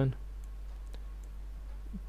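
Faint clicking from a computer mouse as digits are written on screen, over a steady low electrical hum.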